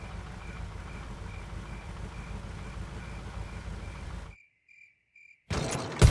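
Crickets chirping a steady pulse, about two chirps a second, over the low rumble of a truck engine that cuts off suddenly a little over four seconds in. A louder noise begins shortly before the end.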